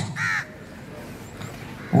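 A brief high-pitched call about a quarter of a second in, then faint steady background noise.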